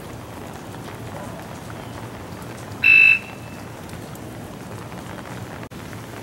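Steady hiss of light drizzle outdoors. About three seconds in there is one short, loud, high beep.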